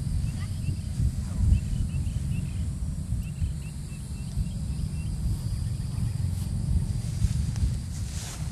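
Wind rumbling on the microphone outdoors, with faint, short high bird chirps in the first half.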